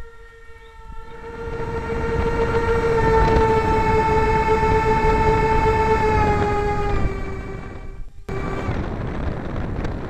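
Four 55 mm electric ducted fans of an RC C-17 model whining steadily over a rush of air, swelling over the first two seconds. The whine eases down in pitch on the landing approach and drops out briefly a little after eight seconds in.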